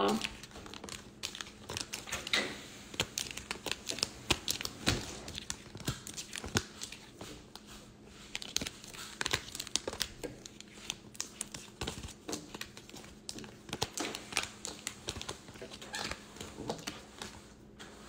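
A deck of tarot cards being handled and shuffled: irregular soft clicks and flicks of the cards throughout.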